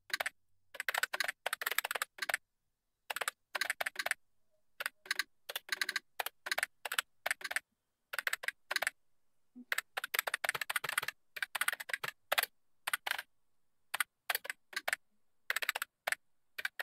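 Computer keyboard typing: quick runs of keystrokes broken by short pauses.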